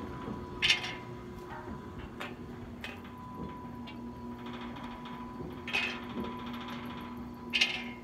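Oil well pumpjack running: a steady hum with brief rasping sounds, the loudest about a second in, near six seconds and near the end.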